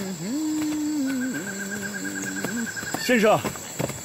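A man's voice in long, drawn-out held notes that step down in pitch, then a short shouted call of "先生" ("sir!") about three seconds in.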